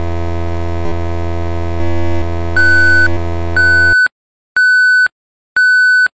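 Electronic logo sound effect: a steady buzzing synthesized drone with a high beep sounding over it, then the drone cuts off sharply about four seconds in, leaving single beeps repeating about once a second.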